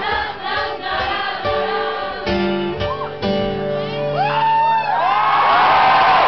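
Acoustic guitar strummed through the song's closing chords. From about four seconds in, audience whoops and cheering rise over the guitar as the song ends.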